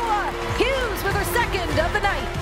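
A hockey broadcast commentator's excited voice calling a goal, with music underneath.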